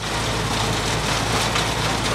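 Self-propelled windrower mowing a hay crop: a steady engine hum under an even rushing noise.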